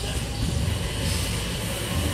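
A steady low rumble of background noise, without distinct knocks or clanks.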